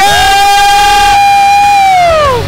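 An emcee's amplified voice holding one long shouted note for about two seconds, sliding up into it and falling away at the end: the last word of a winning team's name drawn out in excitement as it is announced.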